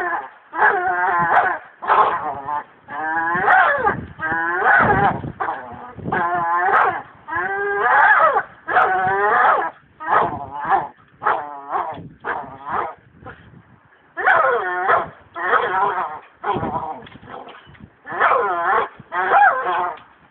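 Pit bull whining and grunting through clenched jaws while hanging from a branch, in a long run of short pitched cries, about one to two a second, with a brief lull partway through.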